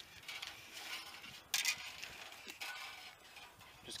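A steel drain-snake cable scraping as it is worked back and forth through a radiator core tube clogged with oil sludge: a rough, rasping metal scrape, louder for a moment about a second and a half in.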